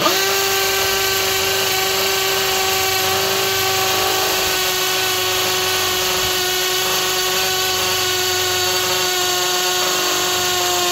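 Milwaukee M12 Fuel 2504 hammer drill on speed 2 boring a quarter-inch hole into a concrete block. It starts abruptly and runs at a steady pitch under load.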